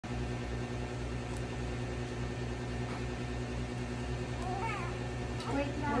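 Newborn baby crying out in short wavering wails, starting about four and a half seconds in and growing louder near the end, over a steady low hum.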